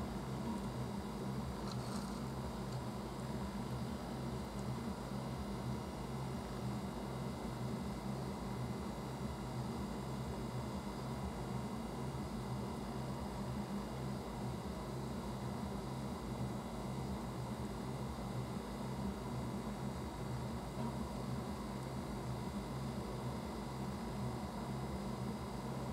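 Steady low hum with an even hiss, unchanging throughout, with one faint brief rustle about two seconds in.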